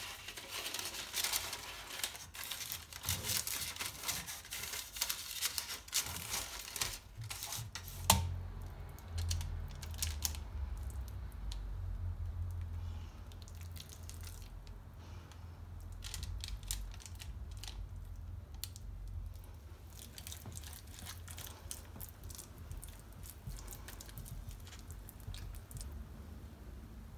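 Parchment paper crinkling and rustling as it is pressed into a metal ring cake pan, then a single sharp knock about eight seconds in. After that come a low rumble and softer, scattered wet sounds as thick batter is put into the pan.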